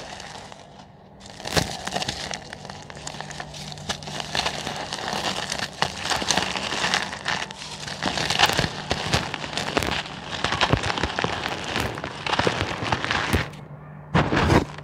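Dry, set pure cement being crumbled and crushed by hand into a cement pot: a continuous gritty crackling and crunching, with louder crunches about a second and a half in, around eight seconds in, and again near twelve seconds.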